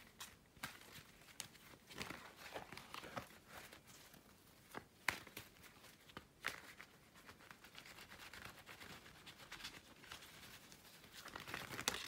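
Tarot cards being handled and shuffled by hand: faint, irregular rustling with a few sharper soft clicks.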